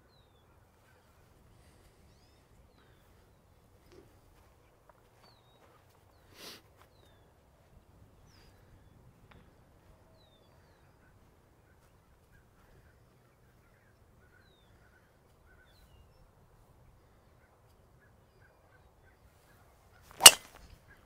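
Near silence, with faint bird calls: short chirps falling in pitch, about one every second or so. There is a single soft tap about six and a half seconds in.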